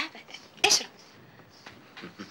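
A single short, sharp vocal burst from a person, like a sneeze, a little over half a second in.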